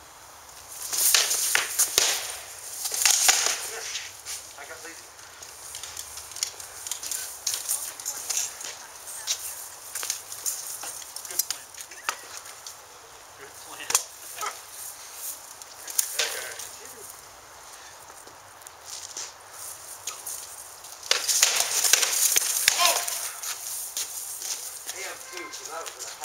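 Armoured sword sparring: weapons striking shields and armour, with rattling mail and plate. There are dense flurries of sharp knocks and clatter about a second in and again around twenty-one seconds, and scattered single knocks between.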